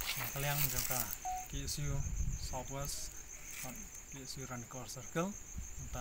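A man talking, with a steady, high-pitched insect trill pulsing rapidly behind the voice.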